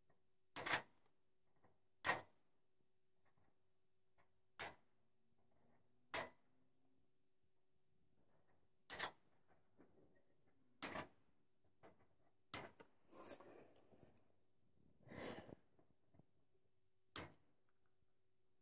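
Tin snips cutting through strands of wire mesh one at a time: about eight sharp snaps spaced a second or two apart, with two longer, rougher sounds of the mesh being worked a little past halfway.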